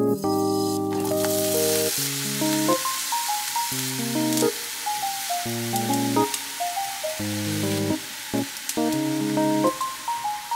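Light instrumental background music over the sizzle of vegetables frying in a hot pan; the sizzle comes up about a second in as broccoli goes into the pan.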